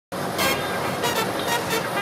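Broadcast intro sting: a steady, noisy sound bed with soft hits about every two-thirds of a second, starting suddenly at the very beginning.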